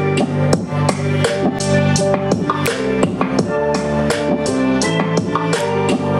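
A song with a steady drum beat and guitar playing loudly at full volume through a pair of small USB-powered Nylavee SK400 desktop computer speakers, with good bass.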